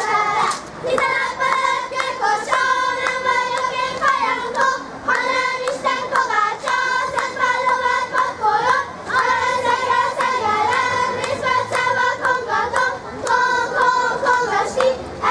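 A group of young girls singing a Transdanubian folk dance song in unison, moving from one held note to the next, with sharp beats about twice a second keeping time.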